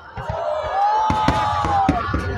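Fireworks going off in a few sharp bangs while a crowd lets out a drawn-out cheer that rises and then holds.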